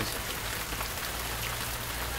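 Steady rain falling, an even hiss with faint scattered drop ticks, over a steady low hum.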